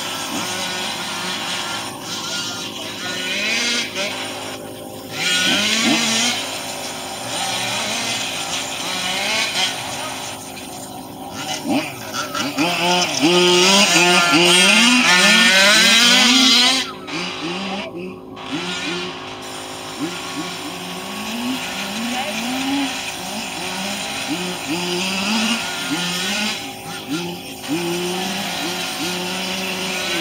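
Small two-stroke engines of several radio-controlled model cars racing, each repeatedly revving up and dropping back as the cars accelerate and brake. The sound is loudest from about twelve to seventeen seconds in, when a car runs close by.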